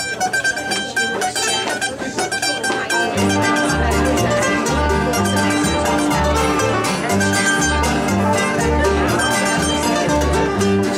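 A string band of banjo, mandolin, acoustic guitar and upright bass playing a fast instrumental breakdown. For the first three seconds a single picked string instrument plays the opening alone, then the rest of the band joins with the upright bass marking the beat.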